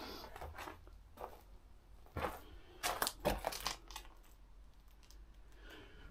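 Footsteps crunching over loose plaster rubble and debris, a string of short crackles with a louder cluster of crunches about two to three and a half seconds in.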